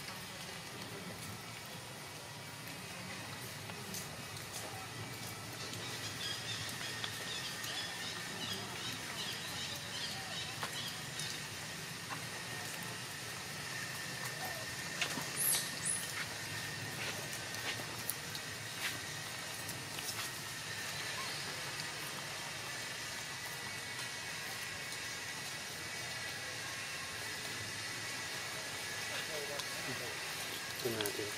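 Steady outdoor background hiss with a faint, level high tone, scattered faint high chirps, and one brief high squeak about halfway through.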